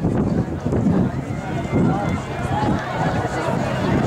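Indistinct shouts and calls from spectators and coaches urging on the runners, over a steady low background noise.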